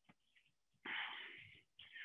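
A man's short, noisy breath about a second in, lasting under a second.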